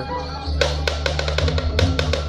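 Balinese gamelan accompanying a Barong dance: a steady low ringing tone under a quick run of sharp drum and cymbal strokes that starts about half a second in.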